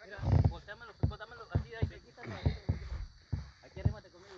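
Indistinct men's voices talking in short bursts, broken by several dull low thumps.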